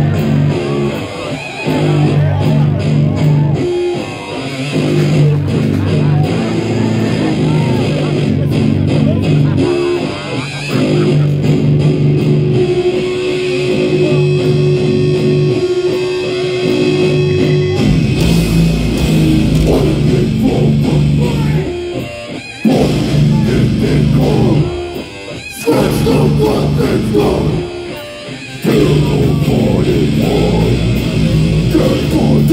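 Death metal band playing live through a festival PA: a chugging low guitar riff, a held guitar note, then the full band comes in heavier about eighteen seconds in, cutting off abruptly three times in a stop-start pattern near the end.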